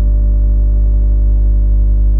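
Background music: a held keyboard chord slowly fading between two struck chords, over a steady low hum.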